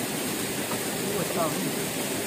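Steady rushing noise of flowing water, with a faint voice under it about a second in.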